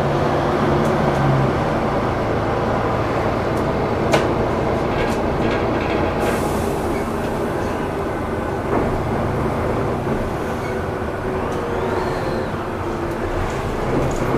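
DAF DB250LF/Plaxton President single-deck bus under way, heard from inside the saloon: steady engine and road noise. A sharp click comes about four seconds in, and a brief hiss about six seconds in.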